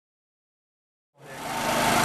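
Silence, then about a second in a steady mechanical hum with background noise fades in and holds.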